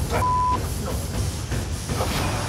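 A broadcast censor bleep: one steady, single-pitched beep about a third of a second long near the start, covering a spoken word. A low, steady rumble runs beneath it.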